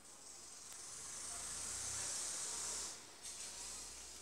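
Electronic hiss from a vintage Gradiente System One stereo through its speakers. It swells over about two seconds, then drops away about three seconds in.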